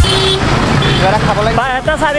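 Street traffic noise with a bus close by, a brief high beep at the start, then a man's voice starting about halfway through.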